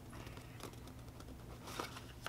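Faint rustling and a few soft clicks from a small toy blind-box package being handled, over a low steady room hum.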